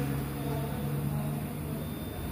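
Steady low mechanical hum at a constant pitch, like a motor or engine running.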